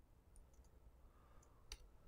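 Near silence broken by a few faint clicks from a laptop being worked by hand, the sharpest a single click shortly before the end.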